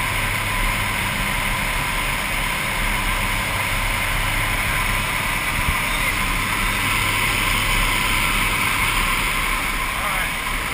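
Steady drone of a skydiving jump plane's engine and propeller, with wind rushing through the open jump door, heard from inside the cabin.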